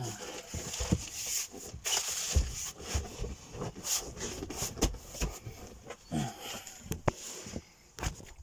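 Irregular thumps, knocks and rustling as a seat cushion is pushed back into place on a plywood shower-tray seat.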